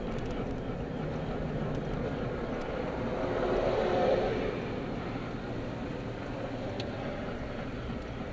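Engine and road noise heard inside a moving car's cabin, a steady hum that grows louder for about a second roughly three seconds in, then settles.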